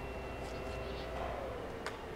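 Hall ambience: faint background voices over a steady hum, with one sharp click near the end.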